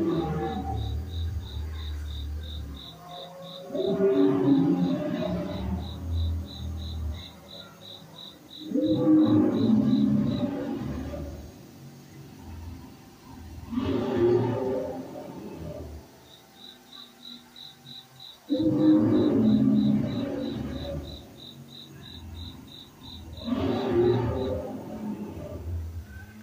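Recorded dinosaur roars from an animatronic ride display, repeating about every five seconds with a low rumble under each. Behind them runs a pulsing high insect-like chirp, about three a second, that drops out for several seconds midway.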